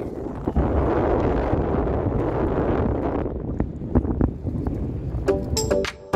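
Wind buffeting the microphone in a steady rushing noise. About five seconds in, electronic background music starts.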